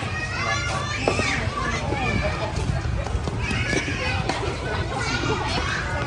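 Children and adults in a crowd talking and calling out, with voices overlapping.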